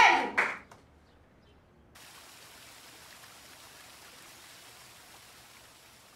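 Voices and clapping cut off within the first second. After a brief near-silence, a faint steady rush of water sets in, from the rock waterfall spilling into a garden swimming pool.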